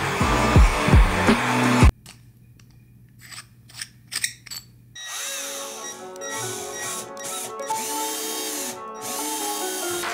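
Background music with a heavy beat that cuts off about two seconds in. Then a cordless drill runs in a few short bursts, boring a small hole into a metal flashlight tube. Music comes back in under the drilling about halfway through.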